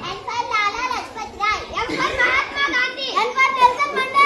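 Children's voices talking, high-pitched and overlapping.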